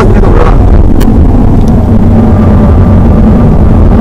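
BMW 120d's four-cylinder turbodiesel engine running at a steady pitch with road and tyre rumble, heard inside the cabin at track speed. A faint steady whine comes in about two seconds in.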